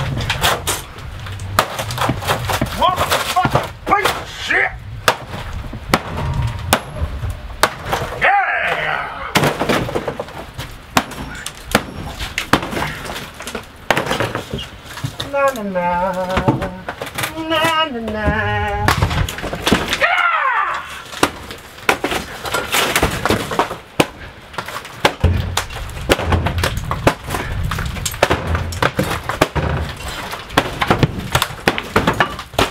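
Demolition of a camper trailer's wood interior: repeated knocks, cracks and breaking of wood panelling and cabinetry as it is pried and torn out with a pry bar and by hand.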